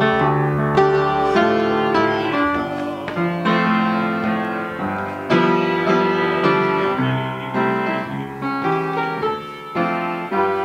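Upright piano being played: a slow tune carried over sustained chords, a new note or chord about every half to one second.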